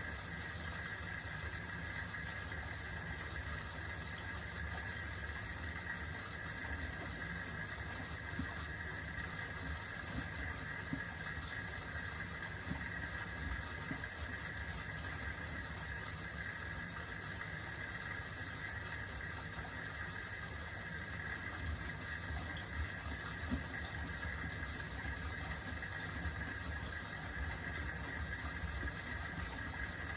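Miele W4449 front-loading washing machine tumbling laundry in water during a wash: its drum motor runs with a low rumble and a steady whine, while water sloshes and small ticks come and go.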